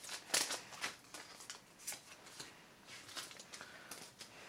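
Pokémon trading cards being handled and shuffled by hand: a run of short papery flicks and rustles, the loudest about half a second in, then fainter ones.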